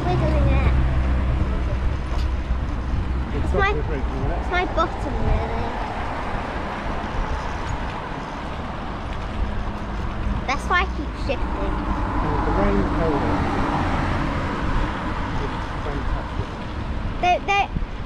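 Motor traffic on the road beside the cycle path, cars and vans passing, over a steady low rumble of wind on the microphone of a moving bicycle, with a few short snatches of talk. The traffic noise swells about two-thirds of the way through as a vehicle goes by.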